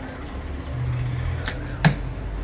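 A Discovery 100 training bow shooting an arrow: two sharp snaps about a third of a second apart, the second the louder, as the bowstring is released and the arrow strikes the target.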